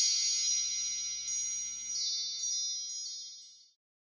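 Chime sting of a logo outro: high bell-like tones struck several times, ringing on and fading out about three and a half seconds in.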